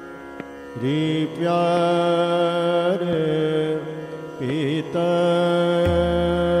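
Hindustani classical vocal in Raag Bhupali: a male voice holds long notes, sliding up into them about a second in, with a quick wavering ornament a little past the middle, over a steady drone.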